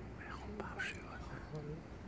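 Faint whispered speech, a few soft words between the louder recited lines.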